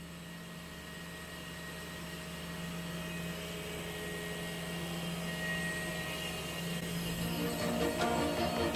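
Machinery of a cryogenic air separation plant running: a steady low hum with a faint high whine, slowly growing louder.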